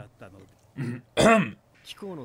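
A man clears his throat once, close to the microphone and well above the quieter dialogue in the background, about a second in.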